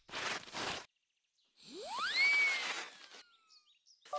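Cartoon sliding sound effects: a short swish, then after a pause a whoosh with a whistle that rises steeply and then slowly falls away, for a character pushed sliding across ice.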